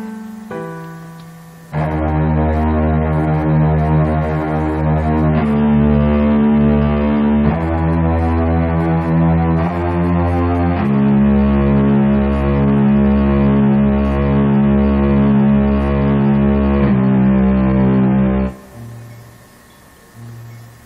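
Instrumental music: a few soft keyboard notes, then about two seconds in a loud passage of sustained chords that change every few seconds, with a bass that pulses about twice a second in the second half. It stops abruptly near the end.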